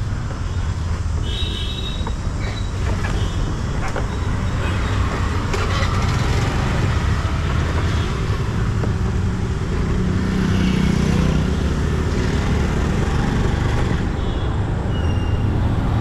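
Motor scooter engine running steadily amid street traffic noise, with a short horn toot about a second and a half in.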